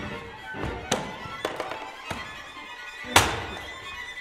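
String quartet music, cut by about four sharp knocks or thuds from something being struck on stage, the loudest a little after three seconds in.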